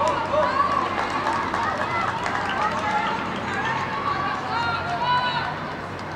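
Several raised voices shouting and calling out across a football match, loudest just after the start and again about five seconds in.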